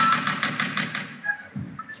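A rapid rattle of sharp taps, about ten in a second, starting suddenly and then dying away.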